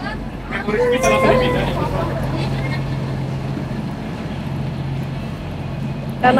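A standing commuter train's steady low hum, with passengers talking in the carriage during the first couple of seconds.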